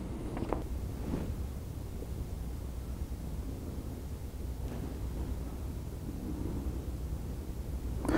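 A steady low room hum, with a few faint brief rustles in the first second or so.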